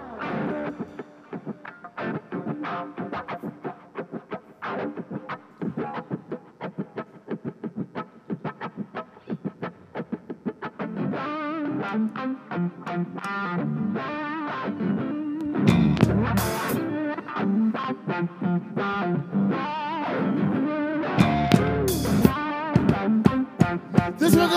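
Live rock band: distorted electric guitar with bass guitar and drum kit. The playing is sparse for the first ten seconds, then fills out into a fuller passage with cymbal crashes.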